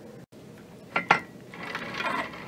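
The clamp of a wooden and aluminium elastic cutter being pushed along its metal track: two sharp clicks about a second in, then a sliding rasp that builds near the end.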